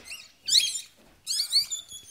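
Newborn Yorkshire terrier puppy giving several high, squeaky cries that rise and fall in pitch, the loudest about half a second in, as it is rubbed in a towel after a dose of doxapram, a respiratory stimulant.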